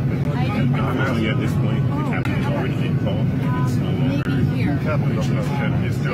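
Several people talking over one another in a heated exchange, a woman's voice raised, over the steady low drone of an airliner cabin.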